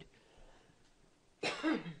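A woman coughs once, briefly, about one and a half seconds in.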